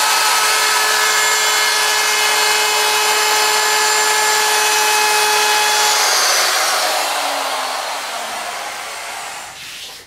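Handheld electric wood router running at full speed with a steady whine, cutting a 3/8-inch round-over along the edge of a board. It is switched off about six seconds in and winds down, its pitch falling as it coasts to a stop.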